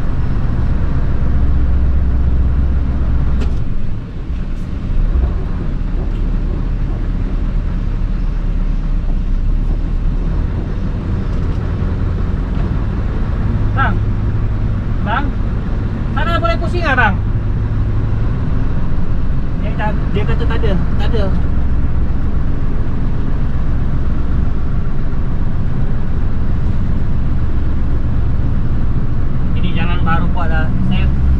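Scania Topline lorry's HPI diesel engine running steadily under way, heard inside the cab with road noise. The engine note dips briefly about four seconds in and comes back lower.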